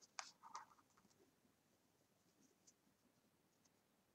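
A few faint scratchy rustles from hands handling strands of wool yarn in the first second, then near silence.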